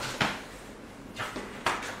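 Three brief scuffs and knocks of two men grappling in a clinch, bodies and clothing pushing against each other, with quiet room tone between them.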